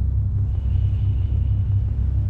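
A steady, deep low rumble, with a faint thin high tone coming in about a quarter of the way through.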